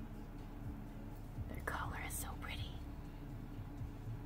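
A person whispering briefly, a short breathy utterance a little under two seconds in, over a steady low hum.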